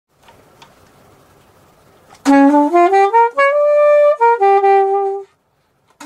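Hakan BM curved soprano saxophone with a Woodstone Super Custom Artist mouthpiece playing a short phrase starting about two seconds in: a quick run of rising notes up to a held note, then a lower held note, stopping a little after five seconds. Before it, a couple of faint clicks over quiet room hiss.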